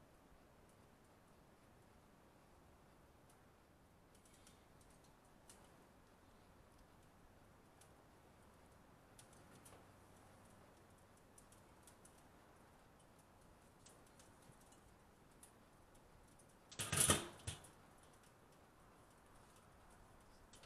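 Faint, scattered light clicks and handling noises from beef being loaded onto a barbecue smoker, with one louder noise about a second long late on.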